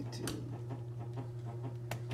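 Steady low hum of an electric fan, with a few faint clicks and one sharper click near the end.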